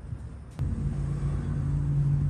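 A low, steady motor hum starts suddenly about half a second in and holds one pitch.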